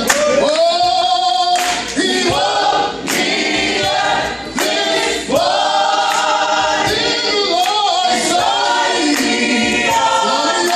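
A small group of mixed voices singing a gospel song a cappella, led by a man on a microphone, with long held notes that swell and fall.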